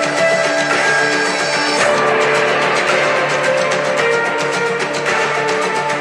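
Soundtrack music with guitar: held chords that change every two seconds or so, at a steady level.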